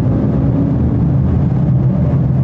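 Heavy truck driving, a steady low rumble of engine and tyres on the road.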